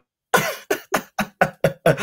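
A man laughing in a quick run of about seven short bursts, roughly four a second.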